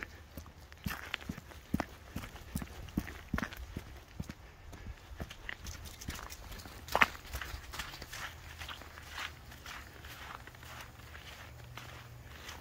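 Footsteps of a person walking over thin snow and leaf litter, irregular steps with one sharper click about seven seconds in.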